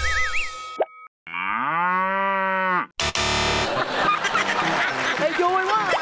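Cartoonish game-show sound effects: a short springy sliding sound, then a brief gap, then a cow's moo lasting about a second and a half. About three seconds in, upbeat music starts with voices over it.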